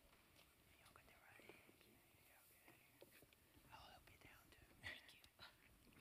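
Near silence, with faint whispering and a few small clicks.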